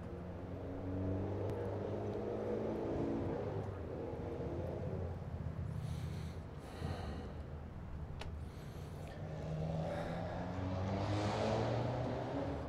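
Faint car engine going by, its pitch sliding, heard twice: once in the first few seconds and again toward the end, with a single click in between.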